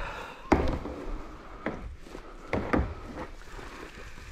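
A few sharp knocks: the loudest about half a second in, then lighter ones near the middle and a quick pair a little later.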